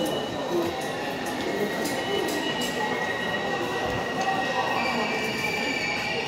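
Electric commuter train squealing as it moves at a platform, a steady high-pitched squeal with further high tones joining about two-thirds of the way through, echoing through the station.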